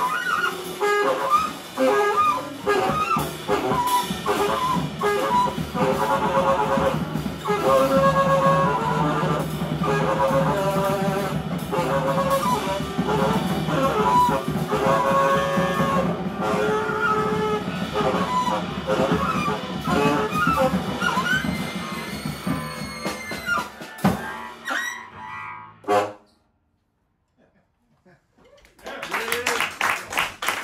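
Live free-jazz trio of tenor saxophone, bowed double bass and drum kit playing together, with sax lines over a steady bass drone and busy drumming. The music thins out in the last few seconds and stops about two seconds before the end.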